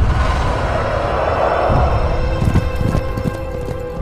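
Dark, ominous horror-film trailer music with a swelling whoosh over the first couple of seconds, then a few short low knocks under a held tone.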